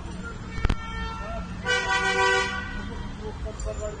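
A car horn sounding once, a single steady blast of a little under a second, about a second and a half in. A sharp click comes shortly before it.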